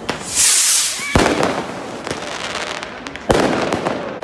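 Street fireworks and firecrackers going off: a loud hissing burst in the first second, a sharp bang about a second in, and a louder bang with an echo a little after three seconds in, amid scattered fainter pops.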